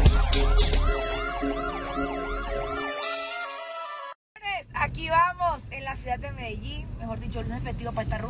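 Electronic intro music that ends in a rising sweep, cuts to a moment of silence, then gives way to a wavering, siren-like wail rising and falling in pitch several times.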